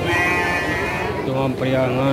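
A sheep bleats once, a steady bleat lasting about a second, amid market chatter; a man's voice follows in the second half.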